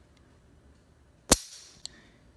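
Kimber Ultra Raptor 1911-style pistol dry-fired on an empty chamber: one sharp metallic click of the hammer falling, with a brief ring, then a fainter click about half a second later.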